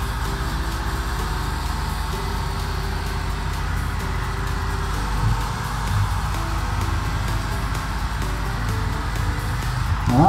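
Background music over the steady blowing hum of an electric heat gun running continuously while it warms vinyl wrap film to stretch it.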